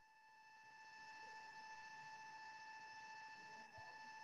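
Near silence on the call line, with a faint steady high whine and its overtones that grows slightly louder about a second in.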